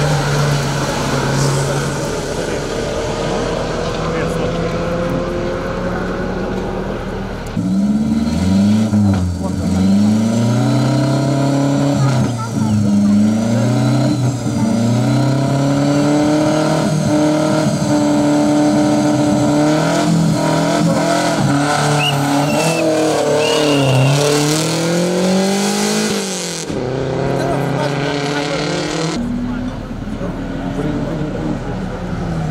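Hill-climb race car engines in a series of short clips. First a car accelerates through a bend. Then a long stretch has an engine revving hard, its pitch climbing and dropping again and again, ending in a sharp rise before a cut.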